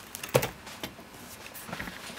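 Handling noise from a diecast model truck being moved on a table: one short knock about a third of a second in, then a few faint clicks.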